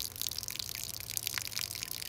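Water poured from a jug into a half-full plastic cup, splashing and bubbling steadily.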